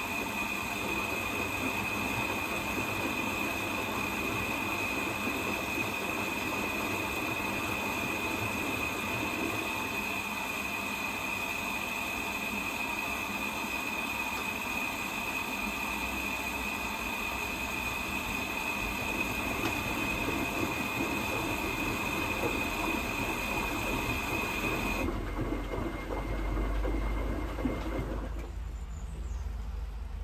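Zanussi front-loading washing machine in its first rinse: water hissing into the drum with a steady high whine, cutting off suddenly about 25 seconds in. A low rumble from the turning drum builds in the second half, and the rushing sound dies away near the end.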